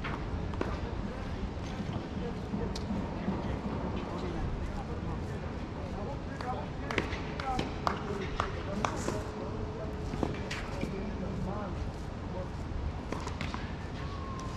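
Tennis balls struck by rackets and bouncing on a hard court during a rally, a string of sharp pops from about halfway through, over a steady wind rumble on the microphone.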